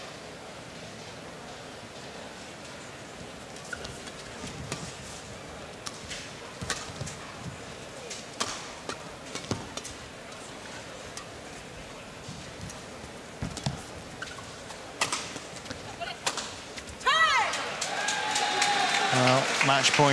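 Badminton rally: sharp, scattered racket-on-shuttlecock hits over the low hum of an arena crowd. About three seconds before the end the point ends and the crowd breaks into loud cheering and applause that swells to the end.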